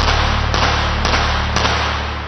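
Loud rushing noise with sharp knocks about twice a second, over low steady background music.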